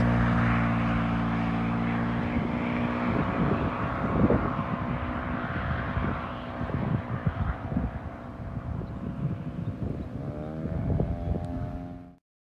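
A road vehicle's engine hum fades away over the first few seconds, followed by uneven low rumbling. Another engine's hum rises about ten seconds in.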